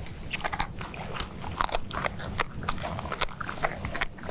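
Tiger biting and chewing into a prey carcass: a run of irregular crunches and snaps.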